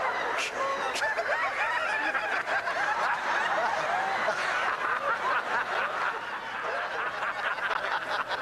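A congregation of many people laughing at once, in dense overlapping peals and whoops that run on without a break. This is the uncontrolled 'holy laughter' of a charismatic meeting, taken as a move of the Holy Spirit.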